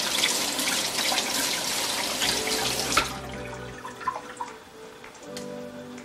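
Kitchen faucet running onto a trout fillet as it is rinsed by hand in a stainless steel sink; the water cuts off about four seconds in.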